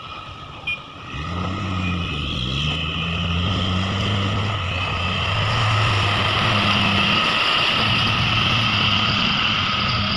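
Loaded Hino three-axle dump truck's diesel engine pulling away under load, its pitch rising as it revs up and the sound growing louder before settling into a steady pull. A brief sharp sound just before the engine picks up, about a second in.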